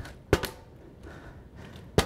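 A partly filled plastic water bottle, flipped, lands with a sharp knock on a tabletop about a third of a second in, then a second knock right at the end.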